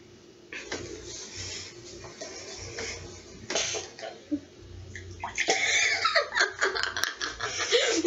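Boys sipping from cups, then snorting and sputtering with laughter through mouthfuls of water. It grows louder and denser from about halfway through.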